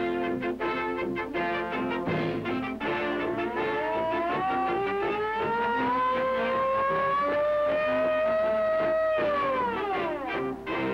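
Brassy orchestral cartoon score, over which a fire-engine siren wails, starting about three and a half seconds in. It rises slowly, holds high, then drops sharply near the end.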